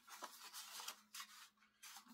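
Faint rustling and a few light ticks of patterned scrapbook paper being handled, one folded piece slid into the other.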